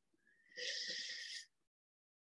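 A man's breath drawn in close to the microphone, lasting about a second, with a thin whistle running through it.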